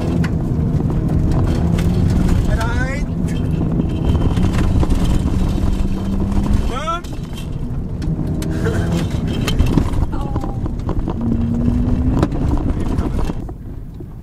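Ford Fiesta ST's turbocharged four-cylinder heard from inside the cabin, running steadily along a dirt road over a dense rumble of tyres on gravel. The engine note holds, breaks off about seven seconds in, and climbs again later; the noise eases off near the end.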